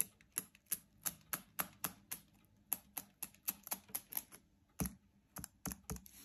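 Quick, light clicks and taps of fingertips and fingernails on an iPhone 13's glass screen and body, about three a second, with two heavier knocks near the end as the phone is handled on the table.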